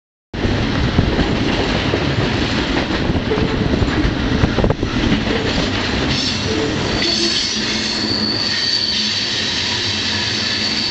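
Freight train cars rolling across a steel trestle bridge, a steady rumble of wheels on rail. About six seconds in, a thin, steady, high-pitched wheel squeal joins it.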